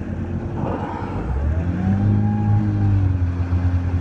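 Motorboat engine running with a steady low hum; its note picks up about a second in and then eases back.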